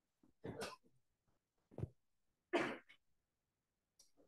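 A person clearing their throat in two short bursts, with a brief knock between them, heard through a video-call audio feed that drops to dead silence in between.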